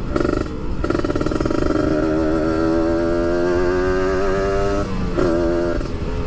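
Kawasaki Ninja 150 RR's two-stroke single-cylinder engine pulling under way, its pitch climbing steadily as the bike accelerates. Near the end the note falls away briefly and comes back lower, as at a gear change.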